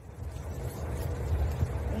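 Low, steady outdoor background rumble with no distinct event.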